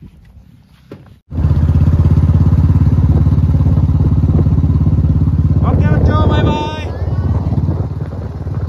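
Motorcycle engine running loud and steady with a deep, even low note, starting abruptly about a second in. A voice briefly calls out over it near the end.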